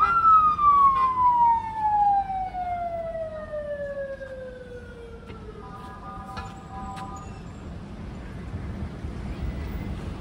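Ambulance siren wailing: its pitch peaks right at the start, then falls slowly and evenly over about five seconds as it winds down and fades. Faint street traffic runs underneath.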